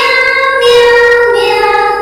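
Singing voice of a Hindi children's rhyme holding one long note, stepping down to a lower note about a second and a half in, over backing music.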